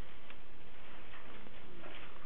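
Steady recording hiss with a few faint, irregular ticks; no speech.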